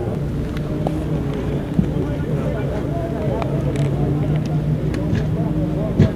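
Outdoor football practice-field ambience: indistinct distant voices calling out over a steady low mechanical hum, with a few brief clicks.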